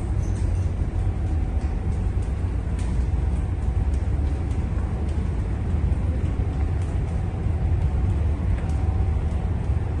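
Steady low rumble of a ship's machinery heard inside its accommodation, with a faint higher hum on top and a few light ticks.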